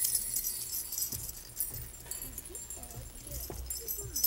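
Small hand-held jingle bells shaken lightly and unevenly by a group of children, jingling on and off, with the most jingling in the first second and near the end.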